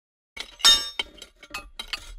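Cartoon sound effect of a boulder being smashed and shattering: silence, then a loud crash just over half a second in, followed by a quick run of sharp clinking, cracking hits as the pieces break apart.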